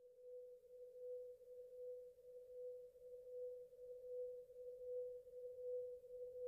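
A faint, sustained musical tone held at one steady pitch, pulsing gently in loudness a little more than once a second.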